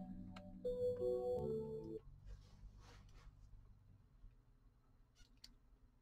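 Music from a vinyl record playing on a Technics SL-1600MKII turntable, cutting off suddenly about two seconds in as the tonearm leaves the record. Faint mechanical noise and a couple of soft clicks follow as the automatic arm returns to its rest.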